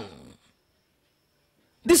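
A man's voice trailing off with a falling pitch as a word ends, then about a second and a half of dead silence before he starts speaking again just before the end.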